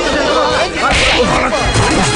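A dubbed fight-scene punch effect: one sharp, swishing hit about a second in, with shouting voices and music underneath.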